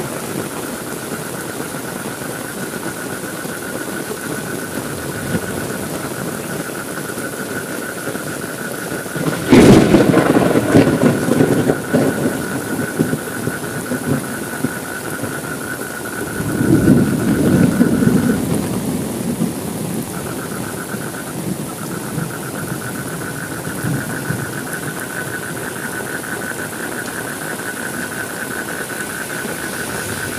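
Steady rainfall hiss with thunder. A sharp crack about nine seconds in rolls into a rumble lasting a few seconds, and a second, softer rumble follows about seven seconds later. A steady high-pitched fluttering tone runs under the rain and drops out briefly after the second rumble.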